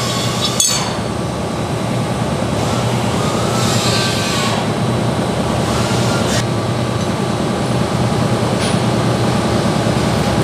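Steady loud mechanical noise with a few light metallic clinks, and a sharp click about half a second in.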